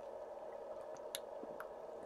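Faint sounds of sipping sparkling water from a plastic bottle: a few soft mouth and bottle clicks, the sharpest about a second in, over a steady low hum.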